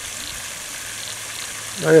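Water fountain jet spraying up and falling back onto the water, a steady even splashing rush.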